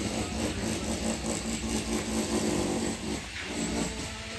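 A motor running steadily with a low hum.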